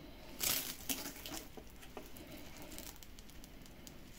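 Velcro strap being handled and pressed closed: faint rustling and crackling, with a brief rasp about half a second in.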